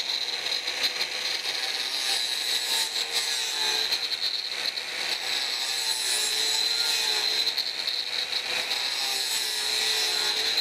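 A 4-inch angle grinder with a diamond multi-purpose cutting blade cutting through PVC pipe. It runs steadily under load, a motor whine with a high, hissy cutting noise, and the pitch wavers slightly as the blade bites.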